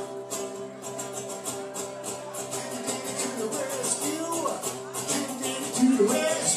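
Live band music led by guitar: a steady strummed rhythm over held notes.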